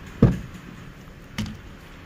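The cab door of a Hyundai Porter II truck being unlatched and swung open: a dull thump about a quarter second in, then a sharp click about a second later.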